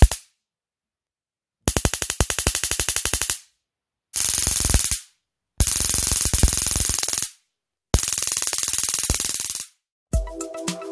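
High-voltage arc of a homemade battery-powered taser snapping across the output gap of its capacitor-and-diode voltage multiplier. A single sharp snap comes first, then four bursts of rapid crackling, each lasting one to two seconds, with silent gaps between them.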